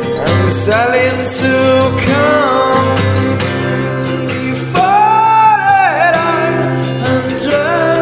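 A song played live on guitar with a singing voice. A long sung note rises and then falls about five seconds in.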